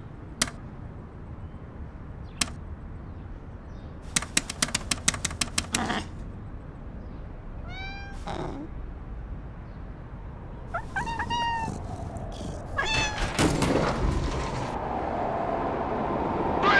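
Two sharp clicks, then a quick run of about ten clicks, like arcade-style push buttons being pressed. A cat then meows three times, each call bending in pitch, and a rushing noise swells near the end.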